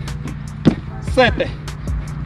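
A foot landing on a plastic aerobic step in a plyometric jump, one sharp thud about two-thirds of a second in, followed by a short voice sound falling in pitch, over steady background music.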